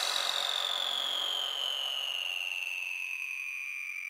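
A single electronic synth tone from the closing tail of a full-on psytrance track, gliding slowly downward in pitch and fading away.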